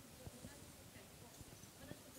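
Near silence: faint, indistinct voices of people in the room, with a few soft clicks.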